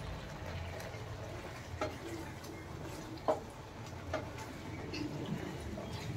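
Wooden spatula stirring thick, bubbling pumpkin halwa in a pan, with a few sharp clicks over a low steady hum; the loudest click comes about three seconds in.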